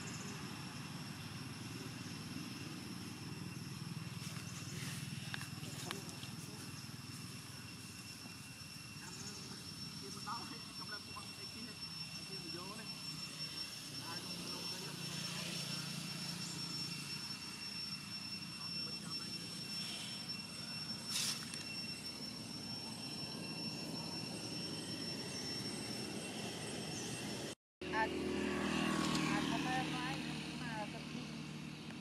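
Outdoor background ambience: a steady low rumble with two thin, steady high-pitched tones over it and faint indistinct voices. Near the end it cuts out for an instant and comes back louder.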